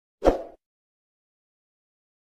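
A single short pop sound effect from an animated subscribe-button graphic, about a quarter of a second in and lasting about a quarter of a second, with a low thump at its start.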